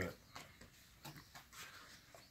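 Faint, scattered light taps and rustles of a cardboard gift box being handled and its lid pressed shut.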